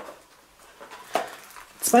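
Small cardboard firework packets being handled and lifted out of a cardboard box, with one short tap about a second in.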